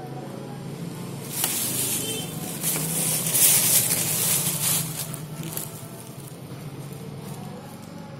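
Yamaha Jupiter Z1's rear wheel turning on the stand, its drive chain running over the sprockets: a rushing whir that builds about a second in and fades away after about five seconds, over a steady low hum. The chain is being checked for noise after adjustment.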